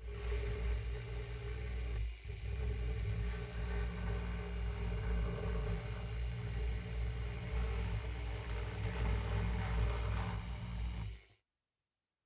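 Handheld rotary tool motor running steadily at high speed, its bit worked along the model ship's hull to prepare it for painting. The hum dips briefly about two seconds in and cuts off sharply near the end.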